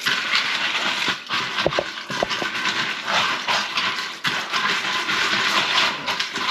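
Dry pinto beans being sloshed around by hand in water in a strainer inside a stainless steel pot: steady swishing, with many small clicks of beans knocking together.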